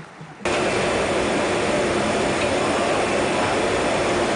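Steady loud noise of glass furnace burners and blowers in a glassblowing workshop, starting suddenly about half a second in.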